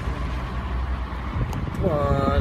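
Steady low rumble and road noise of a moving car heard from inside, with a voice starting just before the end.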